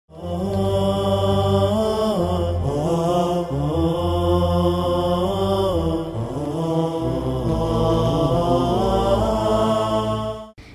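Title-sequence music: a solo voice chanting a slow, melismatic melody with long held notes that bend in pitch, over a steady low drone.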